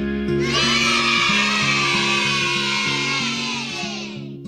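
Music: a repeating low note pattern under a bright, sustained chord that swells in about half a second in and fades out near the end.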